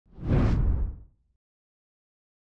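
A single deep whoosh sound effect, swelling up quickly and dying away about a second in.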